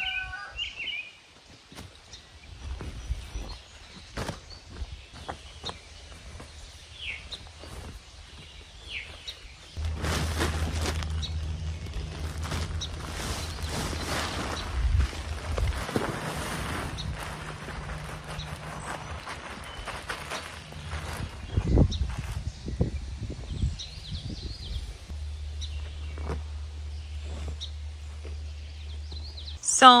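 Bark mulch being tipped out of a bag onto cardboard in a garden bed, with rustling and scraping handling noise that grows louder about a third of the way in. A few small birds chirp in the first part.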